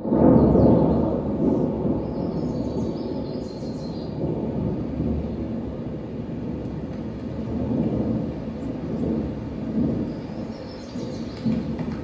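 Recorded thunder from the dance piece's soundtrack. A deep rumble comes in suddenly and loud, then carries on steadily with slow swells.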